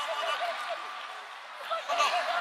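A person laughing in quick runs of short, repeated syllables, with a brief lull in the middle before the laughter picks up again near the end.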